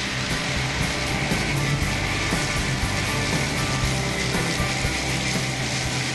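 AGCO self-propelled swather running steadily as its cutting head mows through tall, dry miscanthus: a dense, even rush of cutting noise over a low engine hum. Background music plays underneath.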